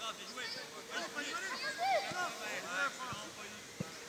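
Voices of young players and spectators shouting and calling across an outdoor football pitch, several short high-pitched calls scattered throughout, with a faint knock near the end.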